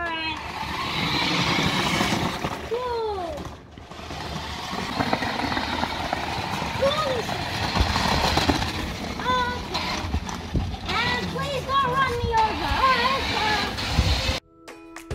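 New Bright Meg-Zilla RC monster truck driving on concrete: its electric drive motor whines and its big rubber tyres rumble. It stops briefly just under four seconds in, then runs again. A voice is heard over it several times.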